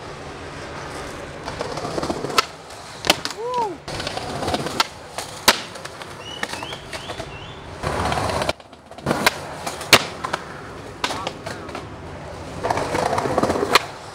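Skateboard wheels rolling on a concrete sidewalk, with a string of sharp clacks from the board popping and landing. The rolling gets louder around eight seconds in and again near the end.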